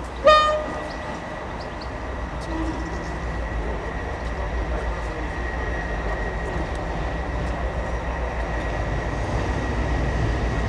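One short whistle blast from 6201 Princess Elizabeth, an LMS Princess Royal class Pacific steam locomotive, as it pulls away with its train. Then comes the steady low rumble of the locomotive working hard and its coaches rolling over the pointwork, slowly growing louder, with a thin steady high tone underneath.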